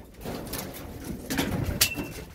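A bird calling, with a few light knocks and a sharp click just before the end.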